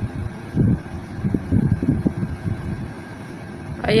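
Low, irregular rumbling noise on a phone microphone, surging unevenly with no steady tone or rhythm.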